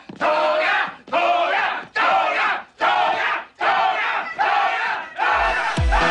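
A group of men chanting "Toga!" in unison, about seven shouts evenly spaced just under a second apart. About five seconds in, electronic dance music with a thumping kick drum comes in.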